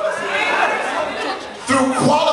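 Several voices talking at once in a church sanctuary, unintelligible chatter.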